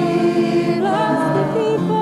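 Several voices singing a song together in harmony, holding long notes. The top voice has a wide vibrato.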